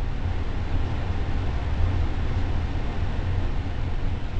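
Steady background room noise: an even low hum with hiss, unchanging, with no distinct events.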